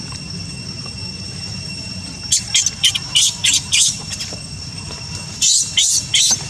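Baby macaque giving short, high-pitched squeals: a quick run of about six from about two seconds in, then a few more near the end. A steady high-pitched whine continues underneath.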